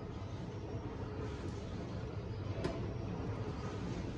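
Low steady room hum with a faint click about two-thirds of the way through, as the steamer tray is lifted off the rice cooker and set down.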